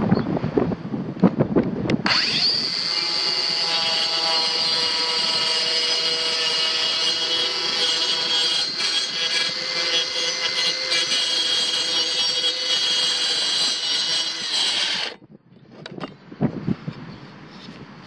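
Kobalt 24-volt Max 4-inch brushless cordless circular saw starting up with a quickly rising whine about two seconds in. It runs steadily while making a plunge cut into a thin wood panel, then cuts off abruptly a few seconds before the end.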